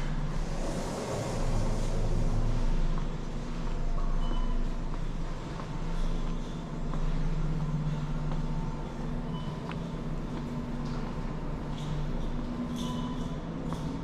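Supermarket ambience: a steady low mechanical hum of the store's ventilation and refrigeration, with a few faint short beeps.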